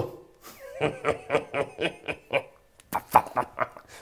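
A man snickering and chuckling, a run of short breathy bursts of laughter with a brief gap near the end.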